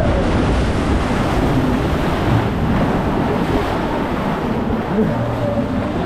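Rushing, churning water of a log flume channel around a moving ride boat, steady and loud, with wind buffeting the microphone.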